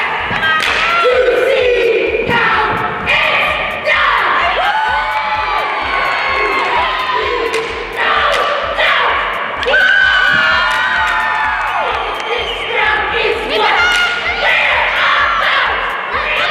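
A girls' cheer squad shouting a cheer in unison, with sharp claps and stomps marking the beat, over background music.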